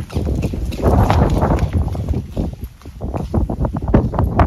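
Diwali firecrackers going off: a dense run of sharp crackles and pops, thickest about a second in and again near the end.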